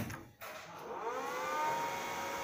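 A sharp click as the Danfoss FC-302 5.5 kW frequency converter is switched on, then its cooling fan spinning up: a rising whine that settles into a steady whir with a few fixed tones.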